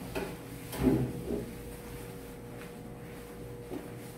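A few knocks and rustling handling sounds, the loudest about a second in and a faint one near the end, over a steady hum.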